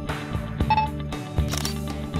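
Background music with a steady beat, and a short camera-shutter click about one and a half seconds in: the OrCam MyEye 2.0's glasses-mounted camera capturing the cereal box to identify the product.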